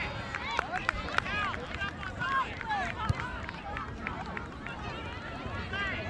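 Voices of players and spectators calling out across an open grass soccer pitch, short high-pitched shouts with no clear words, over an open-air background, with a few sharp knocks in the first half.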